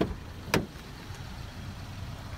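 2010 Chevrolet Equinox driver's door being opened by its outside handle: a faint click at the start and a sharp latch click about half a second in.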